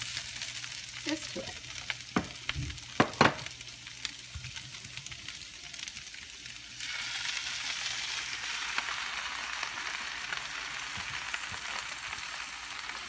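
Diced meat and flour frying in a hot pan, with a few knocks and clinks in the first few seconds. About seven seconds in, the sizzle gets louder as blended raw red chili purée is poured onto the hot meat.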